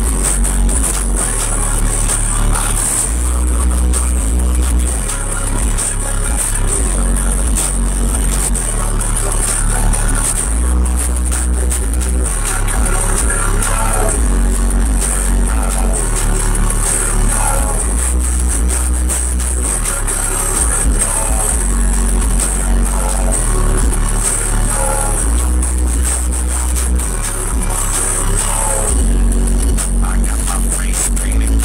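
A song played loud over a car audio system, heard inside the truck cab. Heavy subwoofer bass from four Sundown Audio SA-10 10-inch subwoofers carries deep bass notes that shift every couple of seconds in a repeating pattern.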